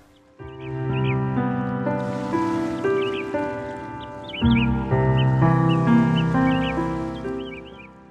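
Calm background music of sustained, slowly changing chords with bird chirps mixed in. It starts after a brief gap and fades out near the end.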